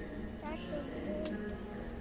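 Faint, indistinct voices in the background over a steady low hum.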